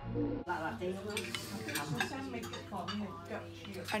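Restaurant table clatter: cutlery and plates clinking against each other amid the chatter of diners.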